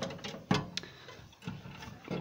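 A few light clicks and knocks as a model airliner is handled and slid back in among other models on a shelf: a sharp click about half a second in, and softer knocks after.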